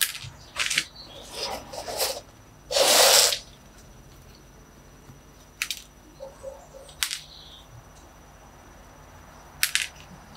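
Fingers working the gritty, gravelly soil in a bonsai pot: small stones clicking and crunching. A louder crunching rustle comes about three seconds in, with a few sharp clicks scattered after it.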